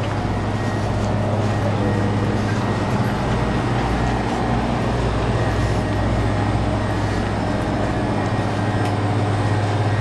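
Steady low rumble and hum of store background noise, with a shopping cart rolling along the aisle.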